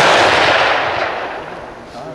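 A Bavarian Werder M/69 single-shot rifle in 11.5 mm black-powder calibre fired once right at the start, its loud report rolling away and echoing down the range, fading over about a second and a half.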